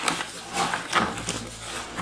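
Plastic wrapping and cardboard rustling and crinkling, with a few light knocks, as a speaker and its cables are lifted out of their box.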